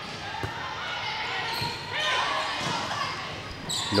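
Volleyball being served and played in a large indoor hall: a few sharp hand-on-ball hits over the background chatter of players and spectators.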